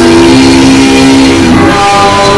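Barbershop-style close-harmony singing: several voices holding a chord, moving to a new chord about one and a half seconds in.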